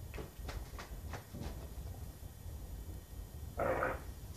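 A plastic bottle being shaken to mix vinegar with baking soda: a few light knocks in the first second and a half, then a brief hiss near the end.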